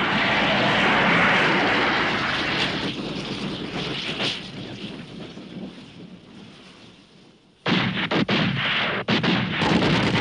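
Film battle sound: the rumble and hiss after a steam train is blown up, dying away over several seconds to near quiet. About three-quarters of the way through, a machine gun and rifles suddenly open fire in rapid shots.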